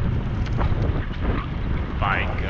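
Wind buffeting the microphone of a camera on a moving bicycle, heard as a steady low rumble.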